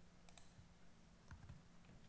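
Faint clicks of computer keyboard keys: a quick pair about a third of a second in and another pair about two thirds of the way through, keystrokes of the Ctrl+S save shortcut.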